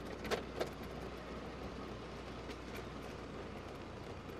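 Steady low engine hum and road noise from a vehicle travelling along a rough concrete road, with two brief faint clicks in the first second.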